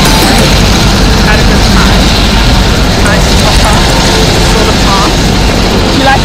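Helicopter running close by, a loud, steady noise of rotor and engine, with voices faintly underneath.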